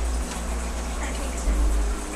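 Low rumble from a hand-held camcorder being moved, over a steady hiss of room noise; the rumble grows louder about one and a half seconds in.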